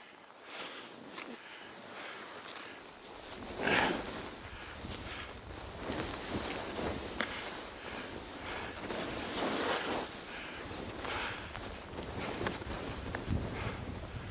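Skis sliding and scraping over snow, swelling into a louder scrape with each turn every second or two.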